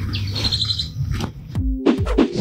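Small birds chirping, a quick run of short falling chirps, over a low steady background hum. Near the end, low thumps begin.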